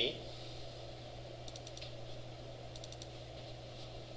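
Three short bursts of sharp clicks from a computer keyboard and mouse, each a few quick strokes, about a second apart, over a steady low hum.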